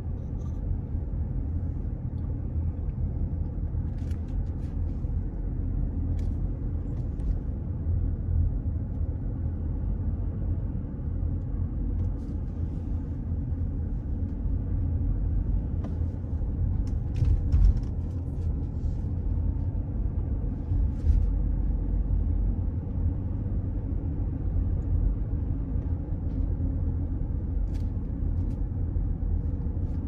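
Steady low rumble of a car's engine and tyres heard from inside the cabin while driving slowly, with a few brief knocks or clicks, the loudest a little past halfway.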